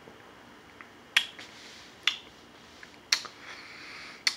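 Lips smacking while tasting a sip of beer: three sharp wet clicks about a second apart, with a few fainter ones between.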